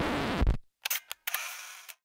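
The last of the music cuts off with a low thump about half a second in. Then come two quick sharp clicks and a short, high whirring rasp lasting under a second, in the manner of a camera shutter and film-advance sound effect.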